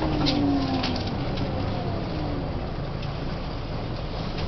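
Volvo B10M bus's underfloor six-cylinder diesel running, heard from inside the passenger cabin as a steady low rumble. A drivetrain whine falls in pitch and fades over the first two seconds or so, with a few rattles near the start.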